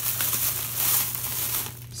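Plastic bag rustling and crinkling as packaged baits are pulled out of it; the rustle dies away shortly before the end.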